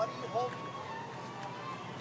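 A faint voice speaks briefly near the start, then quiet, steady street background noise with no distinct events.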